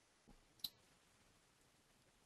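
Near silence with a single short, sharp click a little over half a second in.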